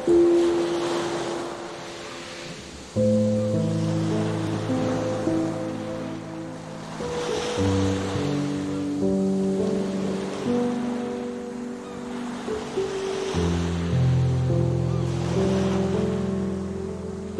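Slow, soft instrumental music of sustained chords, layered over ocean waves breaking on a shore. The chords change about three seconds in, again near the middle and again near the end. The surf swells and eases every few seconds beneath the music.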